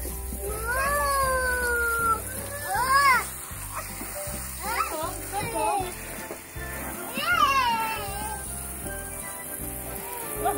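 A toddler squealing and babbling in short, high, rising-and-falling cries, over the hiss of a garden hose spraying a car.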